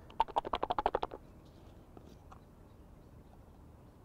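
Small plastic pop-up pot with a few wafter hookbaits and a little liquid glug inside, shaken hard by hand: a quick, even run of rattles lasting about a second.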